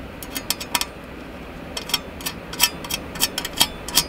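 Small metal clicks and clinks, irregular and light, as a small screw and fastening nut are handled against a stainless steel bracket.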